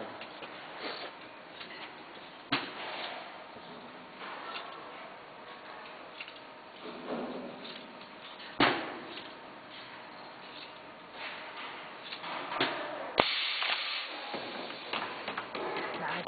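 uPVC window welding machine working with a frame clamped in it: several sharp mechanical knocks, the loudest about halfway through, and a short burst of hissing about thirteen seconds in, over a low workshop background.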